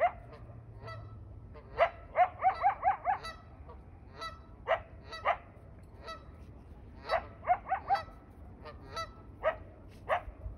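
Canada geese honking: single honks spaced a second or so apart, broken by two quick runs of several honks, about two seconds in and again about seven seconds in.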